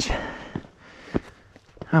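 Footsteps on a bare rock trail, three steps about two-thirds of a second apart, with the hiker's heavy breathing on a steep uphill climb.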